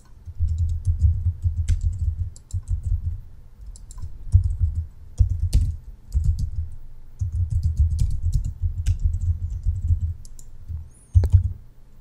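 Typing on a computer keyboard in irregular bursts of keystrokes with short pauses, and a few louder single key strikes.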